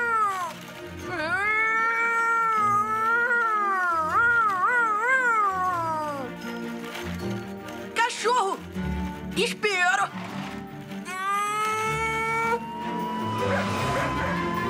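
A child's voice imitating a fire-truck siren, in long wavering wails that rise and fall. A few short falling glides come near the middle, over background music.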